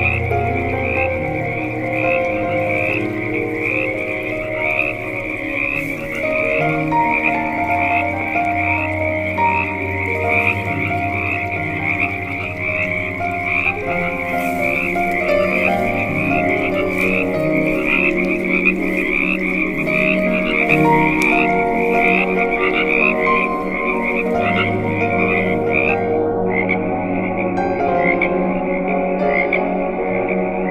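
Night chorus of frogs and crickets, a dense high chirping repeated many times a second, over slow ambient music of held notes and a low drone. The chirping breaks off briefly a little before the end and then resumes.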